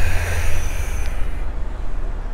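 A steady low background rumble under a faint even hiss, with no clear event standing out.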